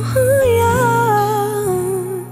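Closing passage of a pop ballad: a woman's voice sings a wordless, wavering melodic line over sustained low chords, settling onto a held final note near the end.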